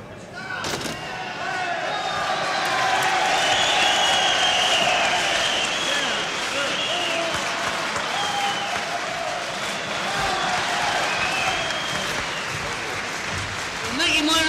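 A live audience applauding and cheering, with voices shouting through it. A single sharp knock comes just under a second in, and then the applause swells and holds.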